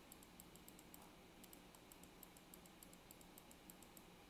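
Near silence with faint, quick computer mouse clicks, several a second and unevenly spaced, as a clone brush is dabbed over an image, over a faint low hum.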